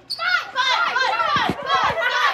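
Children shrieking and shouting excitedly in high-pitched voices with no clear words, starting just after a brief lull.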